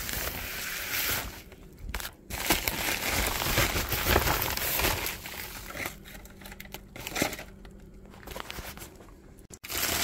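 Paper packing material crinkling and rustling as it is handled, in uneven stretches with short quieter pauses.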